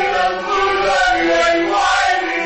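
A vocal trio singing long held notes together over instrumental accompaniment, the pitch shifting about a second in.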